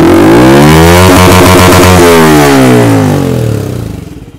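Yamaha MT-15's 155 cc single-cylinder engine revved once through an aftermarket Akrapovič-style slip-on exhaust. The pitch climbs over about a second, holds high, then falls back toward idle near the end.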